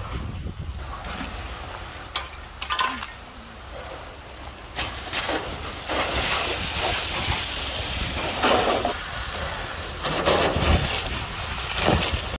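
Loud, steady hissing rush from a smoking building fire, setting in about six seconds in; before that, quieter outdoor rumble with a few short knocks.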